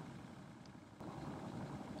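Faint steady background hiss of the recording, with no speech; it steps up slightly about halfway through with a tiny click.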